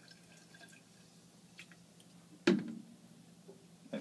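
Hydrochloric acid trickling and dripping into a glass flask of potassium permanganate. Faint ticks, then a single sharp knock with a short ring about two and a half seconds in, and a smaller click near the end.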